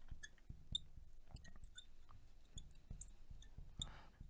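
Felt-tip marker squeaking on a glass lightboard while words are written: a string of short, high-pitched squeaks at an irregular pace, with faint scratching strokes underneath.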